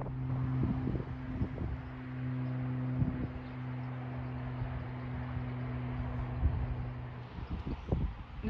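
A steady low-pitched hum that stops about seven seconds in, over wind noise on the microphone.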